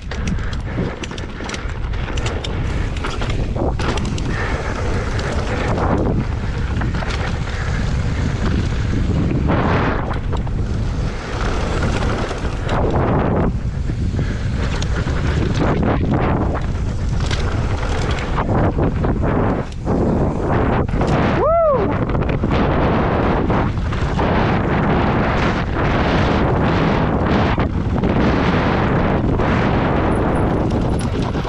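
Wind rushing over an action camera's microphone with mountain-bike tyres rolling over loose dirt and rock on a fast downhill run, the noise rising and dropping unevenly with the bumps. One brief squeal that rises and falls in pitch comes about two-thirds of the way through.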